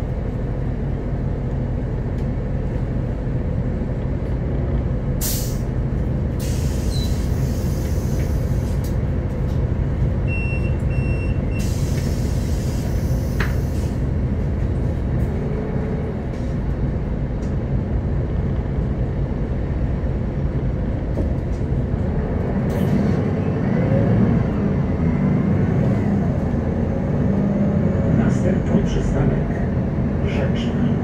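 Cabin sound of a 2007 Solaris Urbino 12 III city bus under way: its DAF PR183 diesel engine running through the ZF six-speed automatic gearbox, with steady tyre and road noise. Two hisses of compressed air, each a couple of seconds long, come about a quarter of the way in and again shortly after, with a short beep between them.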